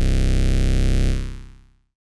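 Low synthesizer note played through a Doepfer A-106-6 XP filter in two-pole notch mode with its resonance turned up. The note holds steady with a narrow notch cutting out only a few harmonics, then dies away about a second in.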